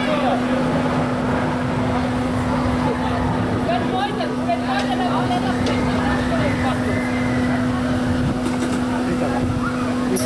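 Steady mechanical hum of a fairground ride's drive machinery running as the ride turns slowly, with faint voices around it.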